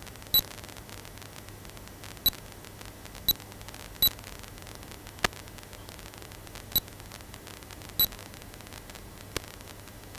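Six short, high electronic beeps at irregular intervals over a steady static hiss, with two sharp clicks in between.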